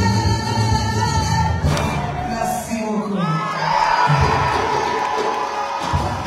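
Live concert sound: a woman singing an amplified song over the band, with the bass dropping out about two seconds in. The crowd then cheers and shouts.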